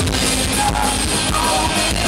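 A punk rock band playing live, with drum kit and electric guitars, recorded loud from the audience.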